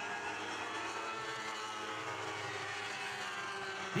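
Several Lightning Sprint race cars' 1000cc motorcycle engines running at speed together, a steady blend of engine tones whose pitches drift slowly.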